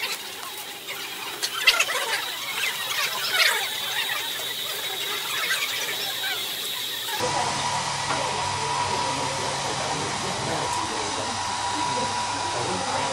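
Small handheld hair dryer running steadily with a low hum, heard from about seven seconds in. Before that there is room noise with light clicks and a thin, steady high whine.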